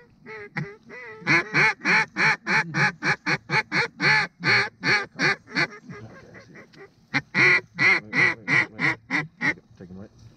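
Mallard duck call blown by a hunter in two fast runs of loud, evenly spaced hen quacks, about four a second, with a short break near the middle, calling to ducks circling over the decoys.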